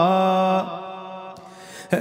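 A man's chanting voice holding a wavering note of an Arabic elegy, which ends about half a second in and dies away in the hall's reverberation. A short, sharp breath near the end comes just before the chant resumes.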